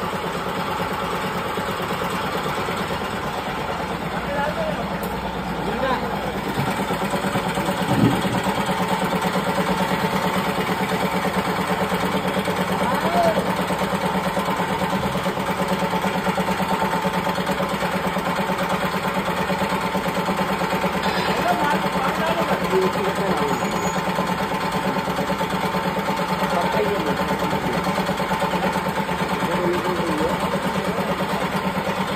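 Grain cutting machine (mush cutter) running steadily under load while processing grain, with a single knock about eight seconds in.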